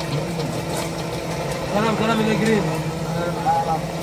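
A steady low machine hum runs underneath, with a man's voice speaking briefly in the middle.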